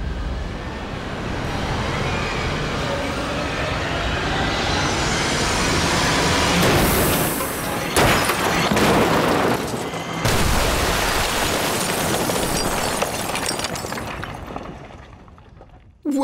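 Ford Mondeo hatchback sent backwards at speed into a row of brick walls. Its noise rises as it approaches, then comes a heavy crash about halfway through and a second one about two seconds later as the walls give way, with bricks and debris clattering before the sound dies away near the end.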